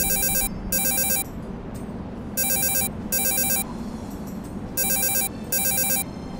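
Mobile phone ringing with an electronic trilling ringtone. It rings in double rings, three pairs about two and a half seconds apart, until it is answered.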